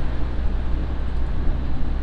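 Steady engine and road rumble inside a moving minibus cabin, with tyre noise from the wet road surface.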